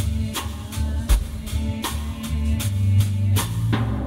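Band music from a freely improvised piece: a drum kit keeps a steady beat over sustained bass notes.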